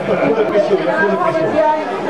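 People talking at once in the background, overlapping voices with no single clear speaker.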